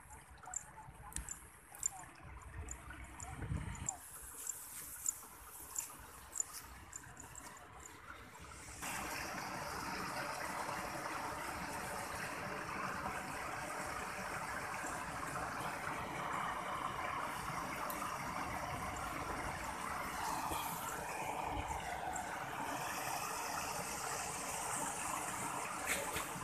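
Water running steadily in a concrete irrigation channel, setting in abruptly about nine seconds in; before that, a quieter stretch with scattered light ticks.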